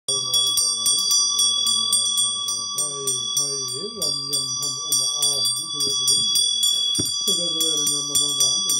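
A small hand bell rung rapidly and continuously, about four to five strikes a second, its ringing held steady throughout, over a low voice chanting Buddhist prayers in a steady recitation with long held notes.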